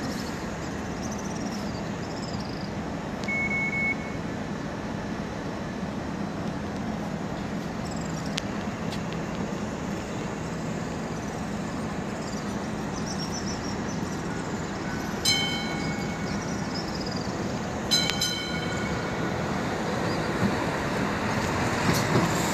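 Steady street and rail traffic rumble beside a Hong Kong Light Rail line, with a short beep a few seconds in and two brief horn-like toots about two-thirds of the way through.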